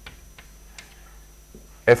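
Chalk tapping and scratching on a blackboard as a formula is written, a handful of short sharp taps spread across the stretch. A man's voice starts again near the end.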